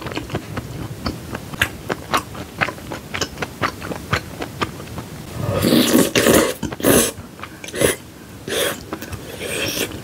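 Close-miked wet chewing of spicy ramen noodles and melted cheese, full of small sharp mouth clicks, then a loud slurp of noodles taken from chopsticks about five and a half seconds in, followed by a few more chewing bursts.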